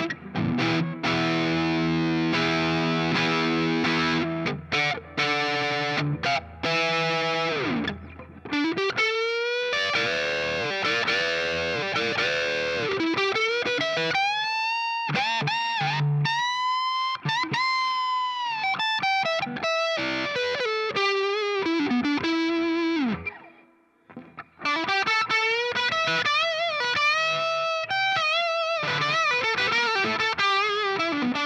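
Gibson Custom Shop 1958 reissue Korina Flying V electric guitar played through a distorted amp on its neck Custombucker humbucker: held chords for the first several seconds, then single-note lead lines with bent, wavering notes, a brief break a little past two-thirds of the way through, then more lead playing.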